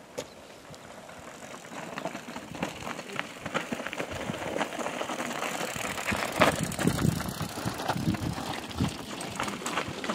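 Mountain bike coming down a loose rocky trail, its tyres crunching over scree and the bike rattling. It grows louder as it nears and is loudest about six to seven seconds in, as it passes close.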